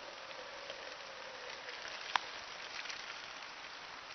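A thin stream of urine trickling steadily into a plastic water bottle, with one sharp click about halfway through.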